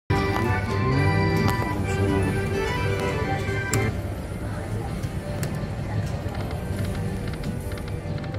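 Big Red pokie machine's electronic game music, a busy run of jingling melodic tones that stops about four seconds in, leaving a lower, steadier background of machine sounds and murmur.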